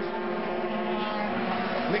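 Several 125cc two-stroke racing motorcycles running hard at high revs in a close pack, their engine notes overlapping, with one note rising near the end.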